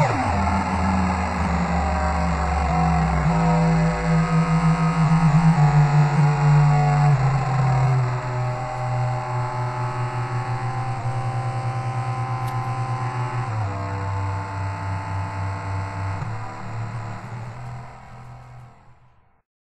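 Electronic drone from a modified light-sensitive subwoofer instrument with Max/MSP autotuning, holding low buzzy notes that jump from one pitch to the next. From about eight seconds in the tone wobbles quickly in loudness, steps down to a lower note a few seconds later, and fades away near the end.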